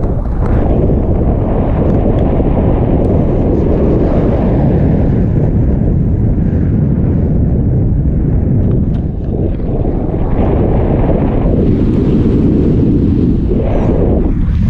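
Wind from a paraglider's flight rushing over a selfie-stick camera's microphone: a loud, steady low roar, dipping briefly about nine seconds in.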